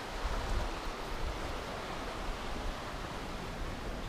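Steady rushing of the fast Aare river flowing below the path, an even wash of water noise with some low rumble.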